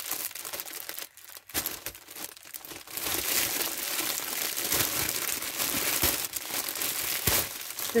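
Crinkly cellophane gift-wrap paper rustling and crackling as a ribbon bow is worked loose from the package. The crackling is patchy at first and gets louder and busier about three seconds in.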